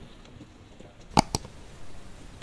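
Two quick, sharp clicks a little over a second in, from a multimeter test-lead clip and wiring being handled at the water heater's switch terminals.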